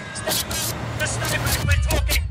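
Rustling, knocks and clicks from a police body-worn camera's microphone jostled as its wearer moves, over a low rumble that grows louder near the end.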